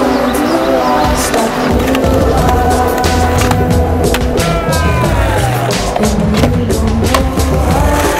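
Skateboard wheels rolling on asphalt, with several sharp clacks of the board popping and landing, mixed with background music with a heavy bass line.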